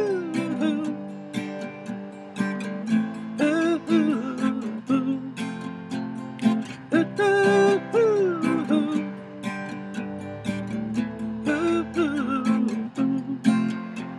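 Acoustic guitar strummed through an instrumental break in a folk song, with a melody line over it that slides down between notes.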